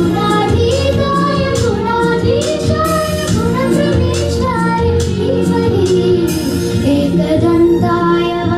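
Young girls singing a devotional Ganesha prayer song into microphones, amplified through the hall's speakers, over an instrumental accompaniment with steady held notes and regular percussion strikes.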